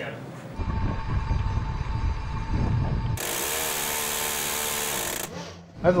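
A low rumble with a steady hum. From about three seconds in, a ship's Phalanx-type close-in weapon system Gatling gun fires one sustained burst at a surface target: a loud, even buzz of about two seconds that cuts off suddenly.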